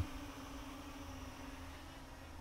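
Faint, steady hum of a small quadcopter's propellers, heard from a distance.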